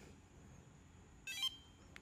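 Flipper Zero handheld giving a short electronic beep chirp of a few quick tones about a second and a quarter in, its signal that the 125 kHz RFID card, an HID H10301 prox card, has been read successfully. Otherwise faint room tone.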